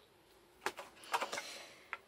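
A few light clicks and taps from a small hand-held object being handled: one about two-thirds of a second in, a short cluster a little after a second, and one more near the end.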